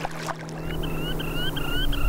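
Small river waves lapping on a muddy shore, with a steady low hum that steps up in pitch about one and a half seconds in. From about half a second in, a high, short rising chirp repeats about five times a second.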